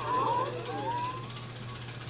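A crowd of party guests reacting to a gift with a collective 'ooh', several voices sliding in pitch at once, then one voice gliding upward.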